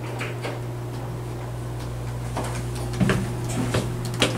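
Dover elevator single-slide car door moving, with light clicks and clunks from the door equipment in the second half, over a steady low electrical hum.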